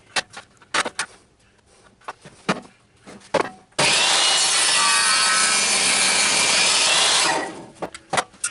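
Bench table saw cutting through a thick block of wood. The sound starts abruptly about halfway through, holds loud and steady for about three and a half seconds, then fades out. Before the cut there are light knocks and clicks as the block is handled and set against the blade.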